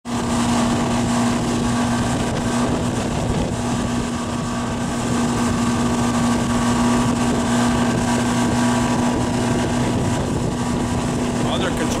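Motorboat engine running at a steady pitch while towing, heard from aboard, over the rush of the wake and wind buffeting the microphone.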